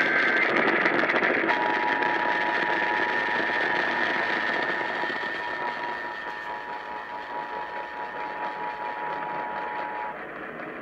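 Emergency Alert System test heard over AM radio static: a brief higher-pitched data-burst tone pair ends, then the steady two-tone EAS attention signal sounds for about eight seconds, growing fainter from about halfway.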